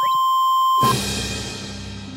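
Cartoon sound effects: a steady electronic beep for just under a second, then a noisy whoosh that slowly fades away.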